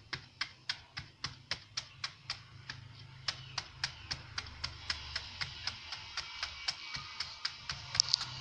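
Knife slicing a banana blossom against a wooden chopping board, each cut a sharp click in a steady rhythm of about three or four a second.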